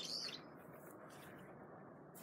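A single short bird chirp right at the start, then only faint outdoor background noise.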